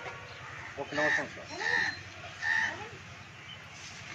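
Birds calling in the background: three short calls a little under a second apart.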